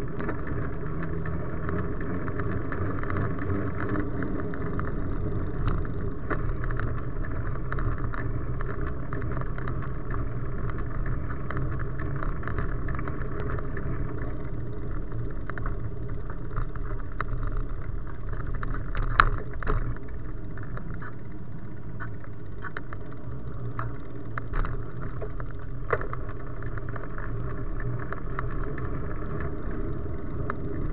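Bicycle riding over wet paths, heard through a bike-mounted action camera: a steady rolling rumble of the tyres and the ride. Scattered light clicks throughout, a cluster of sharp knocks a little past halfway, and one more later.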